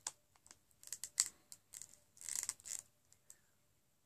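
Lipstick being handled and applied to the lips: a string of small clicks and short noisy sounds over about three seconds, busiest a little past the middle, then stopping.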